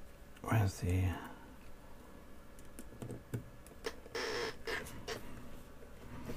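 A brief muttered vocal sound about half a second in, then faint scattered clicks, taps and rustles from hands working small kit parts with a small screwdriver.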